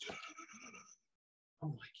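A man's voice trailing off into a faint breathy sound, a short stretch of silence, then the man starting to speak again near the end.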